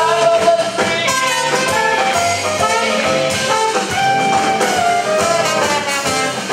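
Up-tempo swing jazz played by a band, with horns carrying the melody over a steady beat.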